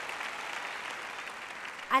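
A large audience applauding, the clapping slowly dying away.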